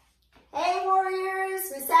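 A woman's voice in a sing-song call, starting about half a second in with one long note held at a steady pitch, then moving to a higher note near the end.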